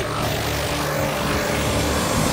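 Cartoon action sound effect: a steady rumbling whir as a creature is swung around on a rope, with faint action music underneath.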